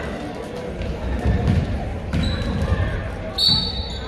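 Basketball dribbled on a hardwood gym floor, a few low bounces, under the talk of spectators in a large gym. A short high squeak sounds about three and a half seconds in.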